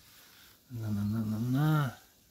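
A man's voice making one drawn-out wordless sound, held steady and then rising in pitch near the end.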